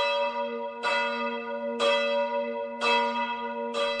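Church bell tolling steadily, struck about once a second, five strokes in all, each stroke ringing on into the next.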